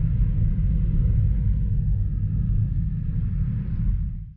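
Steady low rumble of road and engine noise inside a Jeep's cabin while driving.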